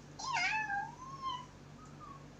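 A single meow, about a second long, dipping in pitch at the start and then rising slowly before it stops.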